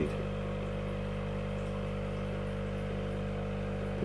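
Steady hum of an aquarium air pump driving the tank's double sponge filters and airstone: a low, even buzz of several steady tones.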